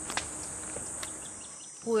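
Steady high-pitched insect drone with a couple of light taps in the first second; a child's voice says "what?" right at the end.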